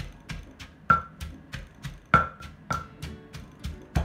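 Wooden pestle pounding curry paste of shallots, chillies and lemongrass in a mortar, steady thuds about three a second. A few harder strokes, about a second in and around two seconds in, strike with a short ringing knock.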